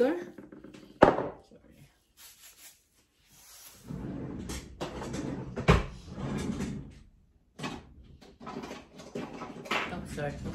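Kitchen drawer or cupboard being opened and rummaged through, with a sharp clack about a second in and a louder knock a little past halfway, muffled rattling and rustling in between.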